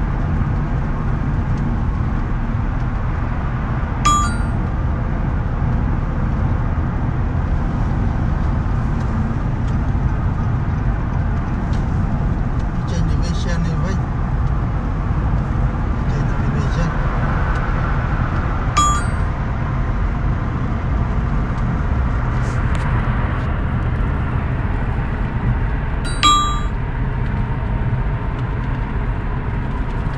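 Steady low road and engine rumble heard inside a car's cabin at highway speed. Three short ringing clicks cut through it, about four seconds in, near the middle and near the end.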